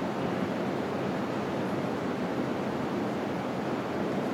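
Steady, even rushing ambience of a large indoor ice-skating hall, with no distinct events.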